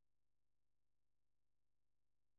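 Near silence: a faint, steady electrical hum and nothing else.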